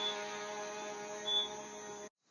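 The last sustained chord of a song's backing music ringing out and slowly fading, with a steady hum under it.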